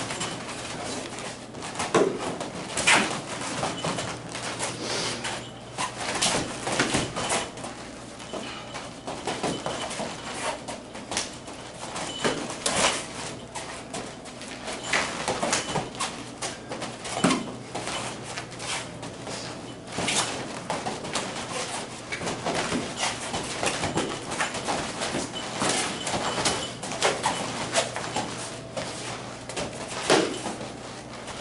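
Light-contact kung fu sparring between two people: irregular quick slaps and taps of strikes and blocks, with footwork scuffing on the foam mats and brief squeaks.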